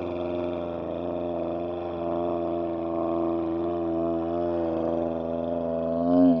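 A low, steady drone with a buzzing stack of overtones that waver slightly, sliding in pitch near the end.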